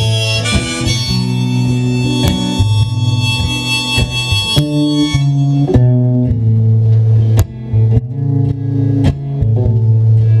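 Acoustic guitar playing an instrumental break in a live folk song, with deep held bass notes and plucked strokes. Over about the first five seconds a sustained high melody line sounds above the guitar, then drops out, leaving the guitar alone.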